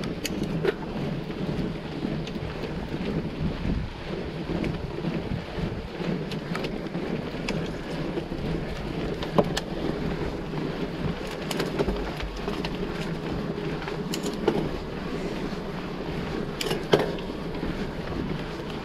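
Mountain bike rolling downhill over a rough stone-paved lane: a steady rumble of the tyres on the stones, with sharp clacks and rattles from the bike at the bumps, the loudest a little past nine seconds in and near the end.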